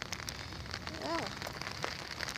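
Rain falling on an open umbrella overhead: a steady hiss, with many scattered sharp taps of drops hitting the canopy.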